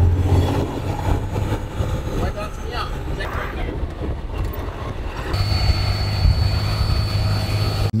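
Cummins-powered diesel Jeep heard from inside the cabin while driving uphill: a low engine drone that eases for a few seconds, then comes back stronger about five seconds in, joined by a thin steady high whine.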